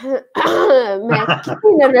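A man's wordless throat clearing running into a stifled laugh behind his hand, followed near the end by a spoken word.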